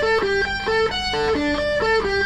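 Les Paul electric guitar playing a quick run of single picked notes, about four to five notes a second, the pitch stepping up and down from note to note.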